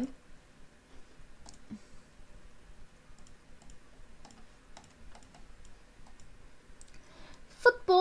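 Faint, scattered clicks of a computer mouse, a few light ticks every second or so.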